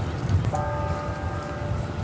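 A bell tolling in slow strokes. The ringing of one stroke is still fading when the next lands about half a second in, and both ring on over a steady low rumble.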